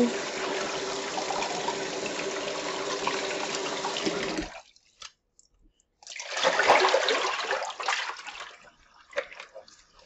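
Kitchen faucet running over a pineapple into a plastic basin, stopping about four and a half seconds in. After a short near-silent pause comes a second, louder spell of splashing water, then scattered drips.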